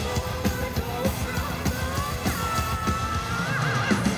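Live metal band playing: steady drums, keyboards and guitar under a female lead singer. From about halfway through she holds one long high note that ends in a wide vibrato.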